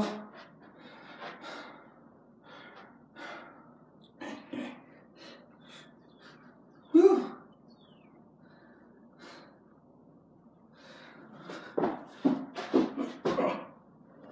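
A man breathing hard and panting between burpees, catching his breath, with one loud voiced exhale about seven seconds in. Near the end the breaths come faster and louder as he goes down into the next burpee.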